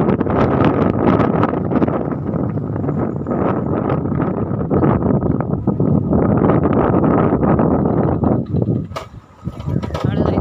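Wind buffeting the microphone on a moving motorbike, a loud, rough rushing with engine and road noise underneath. It dips briefly near the end.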